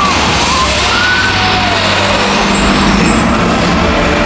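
Nighttime castle projection show soundtrack over outdoor loudspeakers: a loud passage of rumbling sound effects over a low steady drone, with a few faint gliding tones, rather than plain music.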